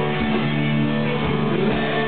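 Live rock band playing a guitar-led stretch with no vocals, sustained guitar chords over bass and a regular kick drum.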